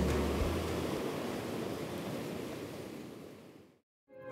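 Ocean surf washing in as a steady rush of noise, with a low rumble of wind on the microphone in the first half second; the surf gradually fades out to silence just before the end.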